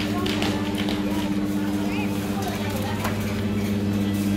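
Supermarket background noise: a steady low hum with faint chatter of shoppers and a few light clicks.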